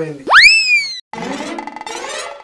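Comic sound effect: a quick pitched swoop that shoots up, then slides slowly back down over about half a second. It is the loudest sound here. After a brief dropout, light background music begins about a second in.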